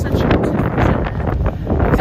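Wind buffeting the microphone, a loud low rumble throughout, with bits of indistinct talk over it.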